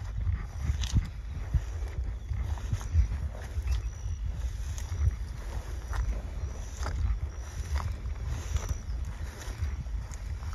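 Footsteps and swishing through tall, dense marsh grass at a walking pace, roughly a step a second, over a steady low rumble of wind on the microphone.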